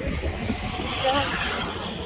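A car driving past close by, its tyre and engine noise swelling to a peak about a second in and then fading, over low wind rumble on the microphone.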